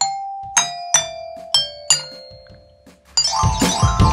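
A child's glockenspiel struck with a mallet: five single notes, each lower than the last, each ringing on after it is hit. Near the end, louder music from the next clip cuts in.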